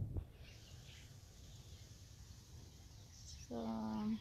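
Faint outdoor background: a steady high hiss over low rumble, after a brief knock at the very start. A woman's voice begins near the end.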